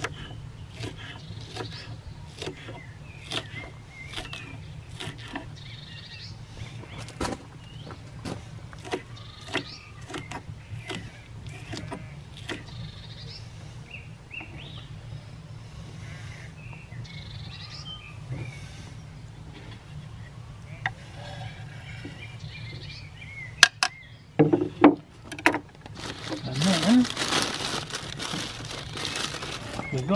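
Kitchen knife chopping a spring onion on a wooden cutting board: a string of irregular taps and knocks through the first half, with birds chirping in the background. A few louder knocks come near the end.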